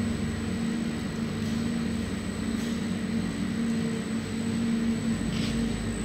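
Rice-noodle sheet steaming machine running: a steady hum with an even low rumble from its motor and belt-driven conveyor.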